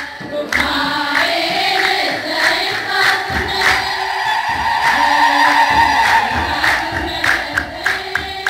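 A church choir and congregation singing an Ethiopian Orthodox hymn together, with a regular beat of sharp strikes running under the singing.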